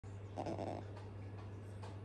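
Asian small-clawed otter sniffing and huffing: a short breathy snort about half a second in, then a few fainter sniffs, over a steady low hum.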